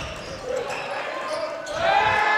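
Basketball being dribbled on a hardwood gym court: a few low bouncing thuds, with voices in the gym behind them.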